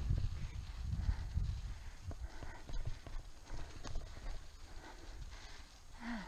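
Road bike rolling over a rough, rutted, sandy dirt trail: irregular knocks and rattles from the bike jolting over bumps, over a steady low rumble of the tyres and riding.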